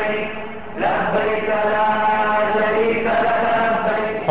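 Vocal chanting in long held notes, a chanted title jingle. The sound dips briefly just before one second, then a new held note starts, and the pitch changes again near three seconds.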